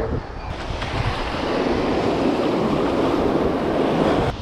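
Small surf waves breaking and washing up the sand, a steady rushing that swells slightly toward the end, with wind buffeting the microphone underneath.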